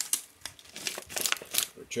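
Crinkling of a plastic MRE snack pouch (cheddar cheese pretzels) as it is picked up and handled, in irregular quick crackles.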